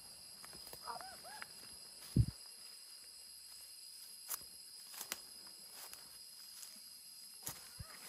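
Footsteps through dry leaf litter and undergrowth, with a few sharp snaps and a dull thump about two seconds in, over a steady high drone of insects.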